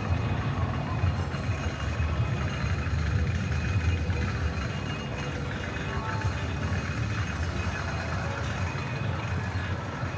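Steady low rumble of outdoor amusement-park ambience, with faint background music.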